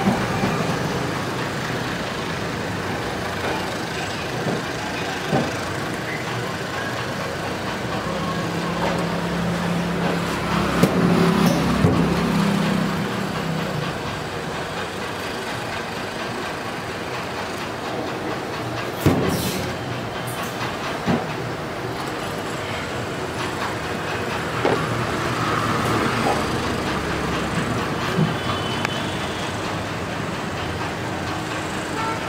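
Steady road-traffic noise. A louder low drone of a passing vehicle runs from about 8 to 14 seconds in. Scattered sharp clicks and knocks are heard, the loudest about 19 seconds in.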